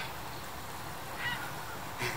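Steady low outdoor background noise, with one faint, brief high-pitched call a little over a second in.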